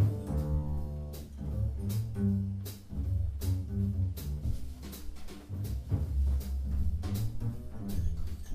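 Live jazz piano trio playing, with walking upright double bass lines to the fore, drum kit and cymbal strokes, and grand piano.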